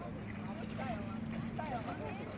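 Beach ambience: scattered distant voices of bathers over a steady low hum.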